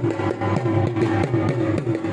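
Dhol drumming in a fast, even rhythm of about six strokes a second, with the drum's low boom sustained underneath.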